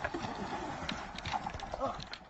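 An irregular run of sharp clicks and knocks, with brief vocal sounds near the start and near the end.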